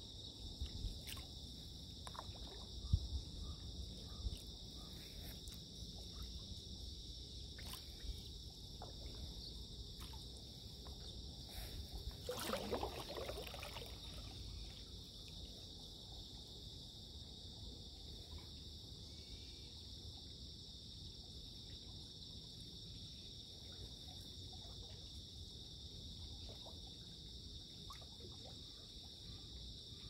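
Steady, high-pitched insect chorus over calm water, with the faint dips and drips of a stand-up paddle's strokes. A louder swish of water rises and fades about twelve seconds in.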